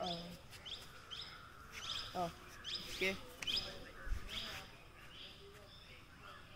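Small birds chirping in the trees, short high calls repeated about once or twice a second, with a few brief faint fragments of a man's voice.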